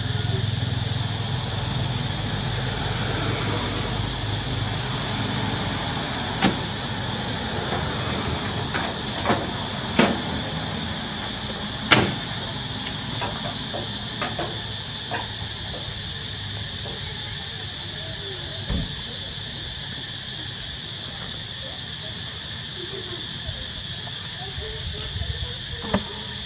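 A few sharp knocks, the loudest about twelve seconds in, as macaques clamber about on wooden rafters under a corrugated metal roof, over a steady high-pitched drone.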